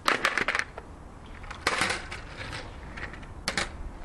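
Skateboard clattering on a tarmac street as it is set down and stepped on. There is a quick run of hard knocks at the start, a louder clatter just under two seconds in, and a few more knocks near the end.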